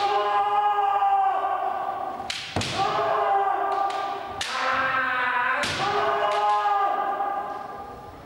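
Kendo fencers' kiai: long drawn-out shouts of a second or two each, four in a row, held at a steady pitch. Between them come sharp knocks from the bamboo shinai strikes and stamps on the wooden floor.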